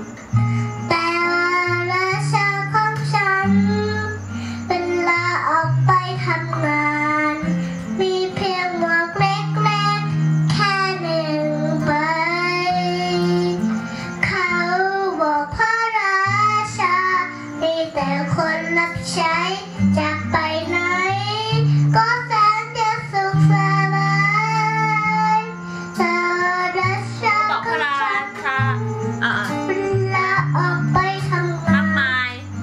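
A young girl singing a melody into a handheld microphone, phrase after phrase, over instrumental accompaniment with held low notes that change every second or two.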